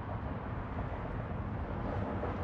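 Steady outdoor background noise, mostly a low rumble, with no distinct event.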